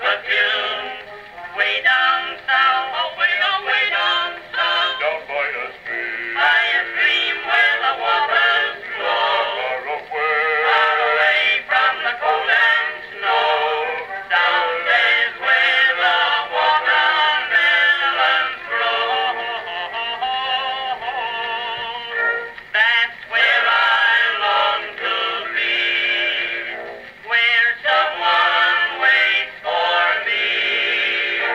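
Edison Blue Amberol cylinder record playing on an acoustic cabinet phonograph: a male vocal quintet singing with vibrato. The sound is thin, with no deep bass or bright treble, as usual for an early acoustic recording played back through a horn.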